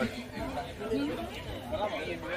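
Indistinct chatter of several people talking at once, with overlapping voices and no clear words.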